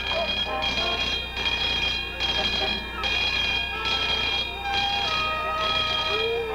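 An alarm bell or buzzer ringing in pulses, a high two-pitched tone repeating about every three-quarters of a second, with voices under it.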